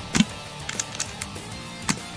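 Two short, weak shots from a Tokyo Marui SOCOM Mk23 gas pistol, about a second and a half apart, over background music. The magazine's HFC134a gas is all but spent, so the shots leave the muzzle at only about 15 and 10 m/s just before the gun runs dry.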